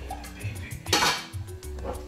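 A metal cooking pot clattering, with one sharp clank about a second in, over background music.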